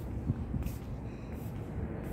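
A low, steady outdoor background rumble with a few faint brief hisses.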